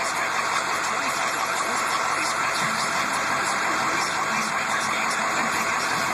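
A motor running steadily, an even mechanical drone with no sharp knocks or changes in pitch.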